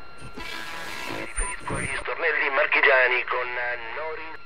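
A short rush of noise, then, after an abrupt cut about halfway through, a raised voice making drawn-out sounds.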